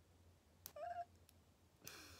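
Near silence, broken about a second in by one brief, faint, high-pitched call lasting about a third of a second.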